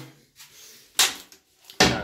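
Toilet seat and lid being flipped up by hand: two sharp plastic clacks, about a second in and near the end, the second the louder.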